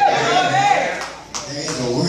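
A drawn-out voice over the church sound system in the first part, then a few sharp hand claps about a second and a half in.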